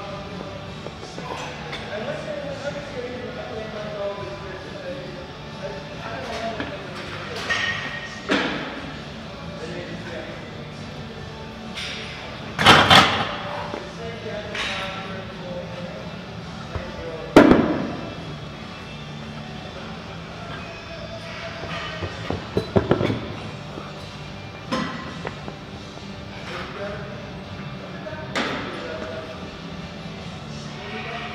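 Metal clanks and thuds of iron weight plates on a plate-loaded press machine, several scattered hits with the loudest about 13 and 17 seconds in, as the load is dropped from two plates to one for a drop set. Gym background music and voices run underneath.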